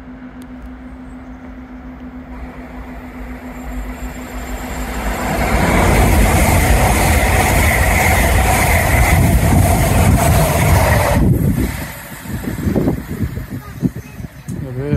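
LNER Azuma high-speed train passing through the station: the rush of wheels and air builds as it approaches and is loud as the carriages go by, with a steady whine over it. It cuts off abruptly about eleven seconds in.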